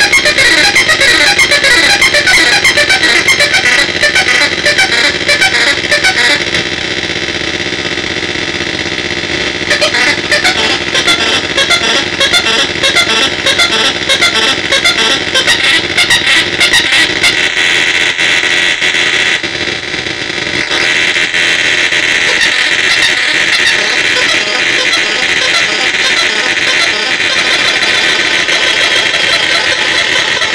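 Synthrotek Mega 4093 NAND-gate drone synth, its 4093 chip modulated by four 555 timers and stepped by a 10-step sequencer, putting out a loud, harsh, chaotic buzzing drone of fast stuttering tones. The texture shifts abruptly about six seconds in and again about twenty seconds in as the knobs are turned.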